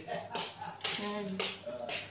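A woman's voice making short wordless sounds, with a few light clinks among them.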